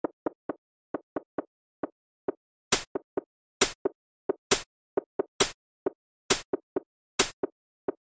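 Electronic beat of short plopping hits, about three a second, in a skipping rhythm. From about three seconds in, a louder, sharp snapping hit joins roughly once a second.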